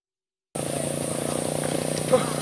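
Dead silence for about half a second, then a small engine running steadily with a low, even hum and a fast pulse.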